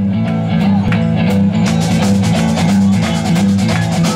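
Rock-and-roll band playing: electric guitars and bass over a drum kit keeping a steady beat.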